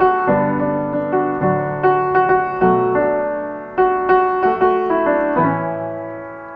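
Piano playing a run of struck chords over a low bass line, each chord starting sharply and ringing as it fades, the last one left to ring down near the end.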